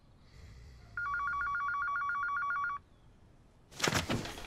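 Electronic telephone ringing: one burst of a fast, warbling two-tone trill lasting under two seconds, starting about a second in. Near the end comes a sudden loud rustle of papers as someone jolts up on a sofa.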